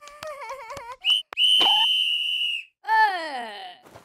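Cartoon sound effects and wordless character vocal sounds: a wobbling, wavering pitched sound, then a long, steady, high whistle, then a tone sliding downward near the end.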